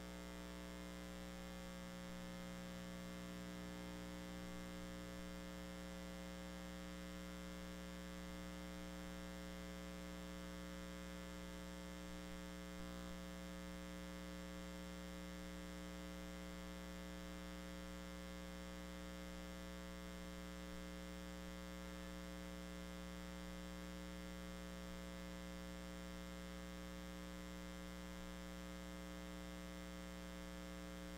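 Steady electrical mains hum in the audio feed, a buzzy drone made of many evenly spaced tones, unchanging throughout; one low layer of it drops away about five seconds in.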